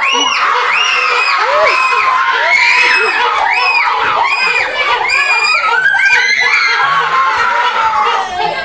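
A group of girls screaming and cheering in celebration of a goal: many overlapping high-pitched yells, one after another without a break.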